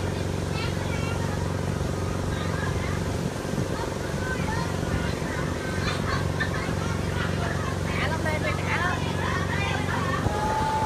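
Steady low mechanical hum of a large pendulum amusement ride's machinery, with scattered voices and calls over it that grow busier in the second half.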